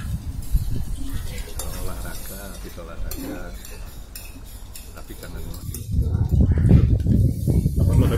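Spoons and forks clinking against plates during a meal, with indistinct voices in the background. A low rumble comes up about six seconds in.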